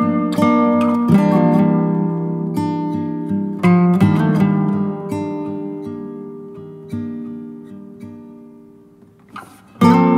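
Background music of a strummed acoustic guitar: chords struck and left to ring and fade, dying away near the end before a short scrape and a fresh loud strum.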